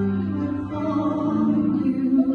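A woman singing a worship song into a microphone, holding long notes that step to new pitches, with instrumental accompaniment.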